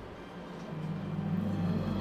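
Low steady rumbling drone from a cartoon soundtrack. It comes in softly and swells a little after the first second.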